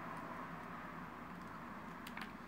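Quiet, steady room background hiss with no distinct sound events.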